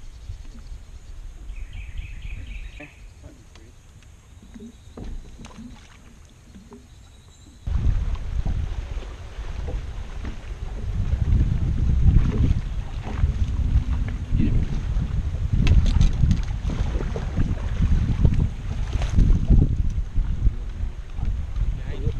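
Low rumbling noise on an open boat, typical of wind buffeting the microphone and water slapping the hull, with scattered knocks. It is fairly quiet for the first several seconds, then jumps suddenly to much louder just under eight seconds in.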